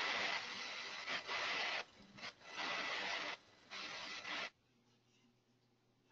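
Rubbing, scraping noise picked up by a remote call participant's open microphone, coming in about four bursts of up to two seconds each. It cuts off suddenly about four and a half seconds in, when that microphone is muted.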